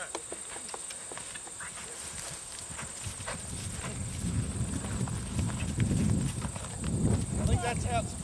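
Thoroughbred horse cantering on grass turf: a pulse of dull hoofbeats that grows louder over the second half as the horse comes close.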